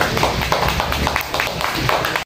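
Several people clapping their hands together in a quick, uneven patter of claps.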